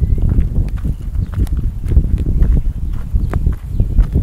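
Walking footsteps with a heavy low rumble of wind and handling noise on a phone's microphone, and irregular light clicks.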